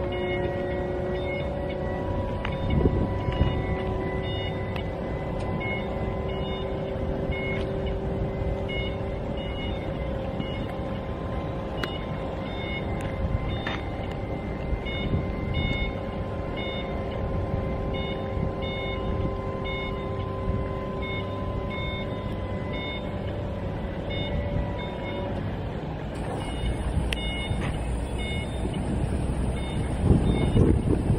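Battery-powered DC hydraulic pump of a Dingli JCPT0807 scissor lift whining steadily as the scissor stack raises the platform, with the lift's motion alarm beeping in short repeated beeps. The pump whine stops near the end as the platform reaches height, while the beeping goes on.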